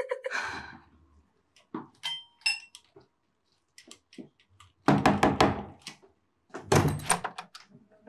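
Knocking on a wooden apartment door: a cluster of loud thuds about five seconds in, then more thuds near the end as the door is unlatched and opened.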